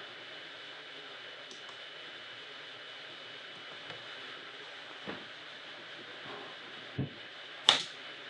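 Faint steady room hiss with a thin high tone, broken by a few small sharp clicks of a laptop touchpad being worked. The sharpest click comes shortly before the end.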